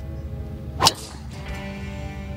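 Golf driver swung and striking a teed-up ball: one sharp crack just under a second in, over background music.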